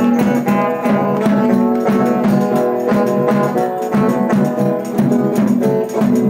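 Live folk music played on guitar-type string instruments, held notes over a steady strummed beat.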